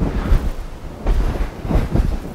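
Low rumbling and rustling noise from body movement, with a few soft swishes as the torso twists and both arms swing through.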